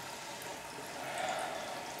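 A running 6 kW continuous stripping still gives a low, steady hiss of flowing liquid.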